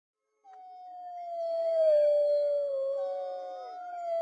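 A dog howling: one long howl that slowly falls in pitch, with a second howl joining near the end and cutting off abruptly.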